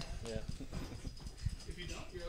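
Faint room sounds of a group of people moving about and talking quietly: scattered light knocks and clicks, with a short spoken word near the start and distant voices.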